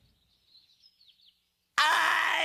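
Near silence with a few faint, high bird-like chirps, then near the end a sudden loud, high-pitched cartoon scream that holds steady.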